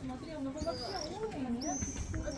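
Voices of people talking in the background, with two brief high chirps, one under a second in and one near the end.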